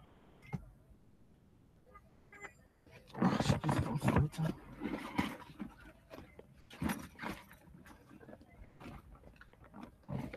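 Rustling and knocking on the microphone as the person moves and handles the device: mostly quiet for the first three seconds, then uneven bursts of noise, with another burst about seven seconds in.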